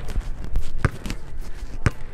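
Basketball dribbled on a hardwood gym court: three bounces about a second apart.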